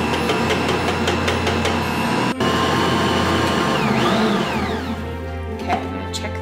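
Bosch stand mixer motor running steadily as it mixes a stiff cookie dough while flour is added, with background music over it.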